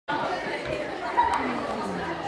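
Many children talking at once: overlapping chatter in a large hall.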